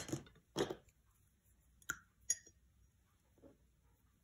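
Two light clinks about half a second apart, a paintbrush knocking against hard painting gear while watercolour is mixed.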